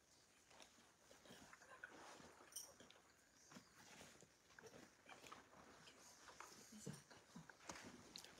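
Near silence: room tone with faint scattered clicks and rustles.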